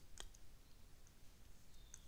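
Near silence with a few faint, sharp clicks, the loudest just after the start, from drawing a figure on a computer screen.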